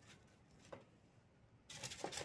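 Near silence with faint handling noises: a light click about three quarters of a second in, then a soft rustle near the end as a paintbrush is wetted and dabbed on a paper tissue.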